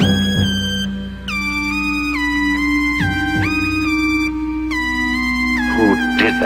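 Electronic music from a dubstep DJ mix: a synth lead playing notes that slide into one another over a held bass and a heavy low end.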